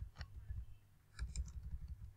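Computer keyboard keystrokes while typing in a code editor: a single click shortly after the start, then a quick run of keys in the second half.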